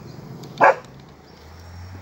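A dog barks once, a single short bark just over half a second in.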